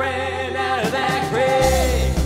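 Live worship band: a man and a woman singing long held notes over acoustic and electric guitar, with a deep bass coming in near the end.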